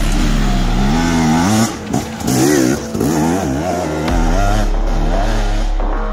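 Dirt bike engine revving up and down over and over as it is ridden, its pitch rising and falling roughly twice a second, with a brief drop-off about two seconds in.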